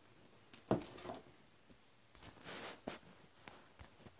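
Cardboard box being bent and folded by hand: a sharp knock of the card under a second in, then soft rustling and scraping of the cardboard with a few small clicks.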